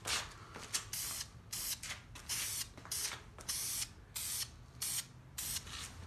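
Aerosol rattle can of VHT Roll Bar & Chassis paint hissing in short bursts, about two a second, laying down a light tack coat.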